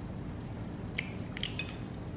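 A few light clinks of a metal fork against a ceramic plate: one about a second in and a quick cluster of two or three about half a second later, over a steady low background hum.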